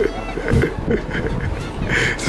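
Mocking laughter from a few people, in short repeated bursts.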